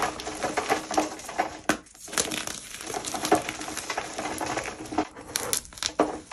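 Blocks of gym chalk being crushed and crumbled in the hands, a dense run of crunching and crackling, with chunks and powder falling onto a metal wire rack. There is a brief pause about two seconds in.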